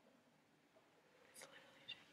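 Near silence: room tone of a concert hall, with a couple of faint, brief noises near the end.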